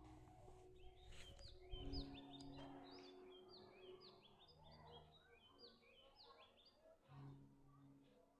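Faint bird chirping, a quick run of short high chirps through the first half, over near-silent room tone, with a brief soft knock about two seconds in.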